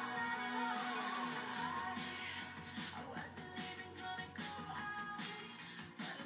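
Music playing in the background, with a small toy maraca shaken in several short bursts of rattling. The loudest burst comes about two seconds in.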